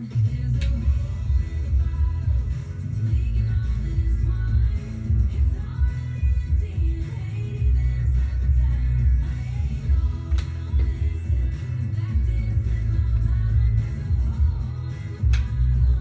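A pop-country song with singing and a heavy bass line playing on the radio. Three sharp clicks sound over it, near the start, about two-thirds through and near the end.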